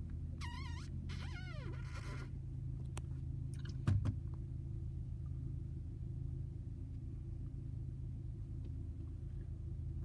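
Steady low hum of a car's idling engine heard inside the cabin. Two short high-pitched warbling sounds come in the first two seconds, and a single knock about four seconds in.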